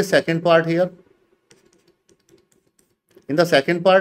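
A man talking in the first second and again from about three seconds in, with a gap between filled by faint, scattered light clicks of a stylus tapping on a pen tablet.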